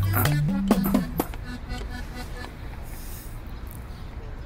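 Background music score with a bass line stepping between notes and sharp percussive hits, ending about a second in and leaving only a faint, even ambience.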